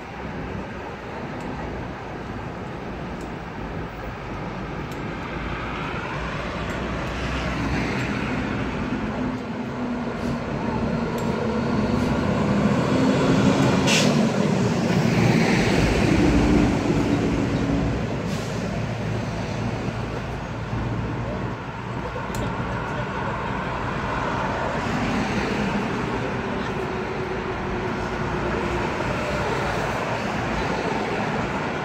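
Roadside street traffic, with a heavy vehicle's engine hum building to its loudest about halfway through and then fading, and a short sharp high sound at the peak.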